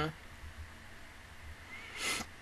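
A woman's short voiced 'mm' right at the start, then a brief breathy sound near the end, over faint steady room hiss.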